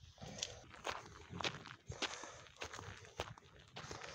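Footsteps of a person walking: a faint, uneven series of steps, about one or two a second.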